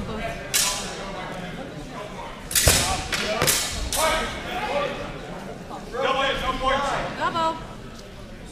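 A few sharp knocks, the loudest about two and a half seconds in, among indistinct voices echoing in a large hall.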